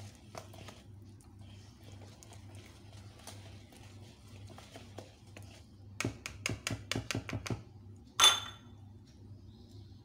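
Wire whisk beating cake batter in a bowl, with light scraping clicks at first and then a quick run of about eight sharper clicks of the wires against the bowl. A single louder ringing knock follows about eight seconds in.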